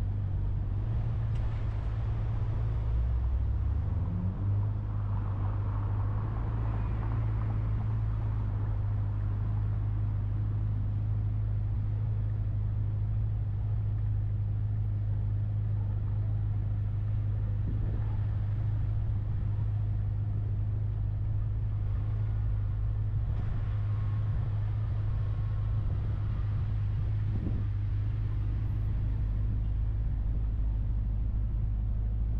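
Steady low rumble of a car cruising at parkway speed: tyre and engine noise heard from inside the cabin. Other traffic swells past a couple of times.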